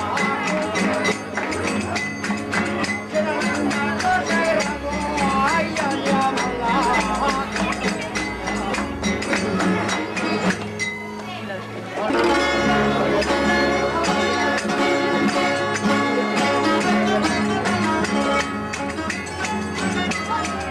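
Traditional Spanish ronda song: a man singing in a wavering folk style over plucked and strummed strings (guitar and bandurria). After a brief dip about eleven seconds in, a fuller, louder passage of strings and voices begins.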